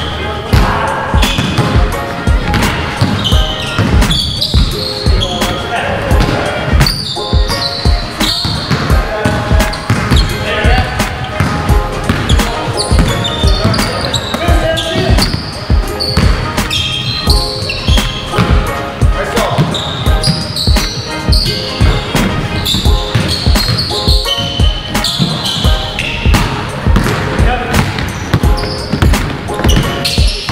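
Basketball dribbled on a hardwood gym floor, bouncing over and over, with voices and music mixed in.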